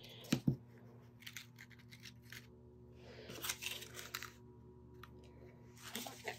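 Small handling sounds of paper craft flowers being moved: two sharp taps near the start, then scattered soft rustles and light clicks, over a faint steady hum.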